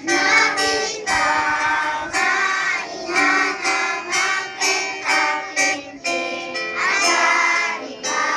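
A group of young children singing together in unison, line by line, with brief breaks between phrases.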